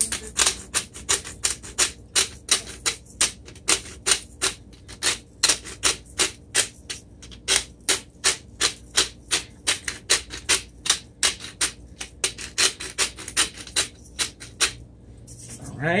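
Stone Mill black peppercorn grinder being twisted by hand, grinding pepper in a steady run of crisp clicks, about four a second, that stops shortly before the end.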